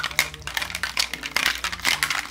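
Ice rattling inside a metal Boston cocktail shaker shaken gently by hand: a quick, uneven run of sharp clinks and knocks as the ice strikes the tin, chilling and mixing the drink.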